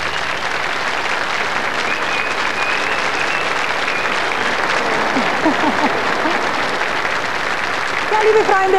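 Large audience applauding steadily, with a few faint voices in the crowd about five seconds in.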